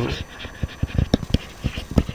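Stylus tapping and scratching on a writing tablet while words are handwritten, a run of short, irregular clicks.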